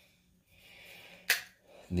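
A quiet pause broken by one sharp click a little past halfway, then a man's voice beginning at the very end.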